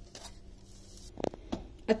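Quiet room sound with a faint steady hum, a brief voice sound a little after a second in, and a few soft clicks near the end. The mixer-grinder is not heard running.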